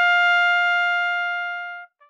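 A trumpet holding one long high note, the top of a rising three-note call, fading gradually and stopping shortly before the end.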